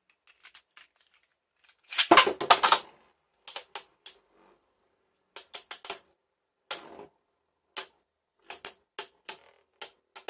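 A Beyblade Burst top launched from its launcher into a plastic stadium, with a brief loud rattle about two seconds in. It is followed by sharp plastic clicks and clacks every second or so as two spinning tops hit each other and the stadium wall.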